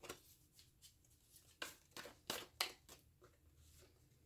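A deck of oracle cards being shuffled by hand: a few short, sharp card clicks and slaps, most of them bunched between about one and a half and three seconds in.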